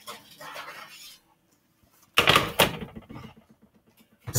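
A metal baking sheet is pulled out of the oven and set down on the stovetop: a short, loud clatter about two seconds in, after a quiet stretch.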